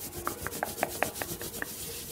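Fast hand sounds: hands rubbing and brushing quickly, with a run of short clicks and pops about five a second.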